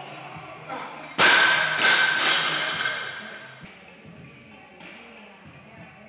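Loaded steel barbell with bumper plates lowered from the shoulders to the hips: a sharp metal clank about a second in, a second clank just after, and the plates and collars ringing as it fades over about two seconds. Background music plays under it.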